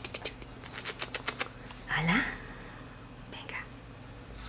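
A quick run of light, sharp clicks from a young puppy's claws and paws on a hard terrazzo floor, followed about two seconds in by a short, soft rising murmur from the woman and a few fainter clicks near the end.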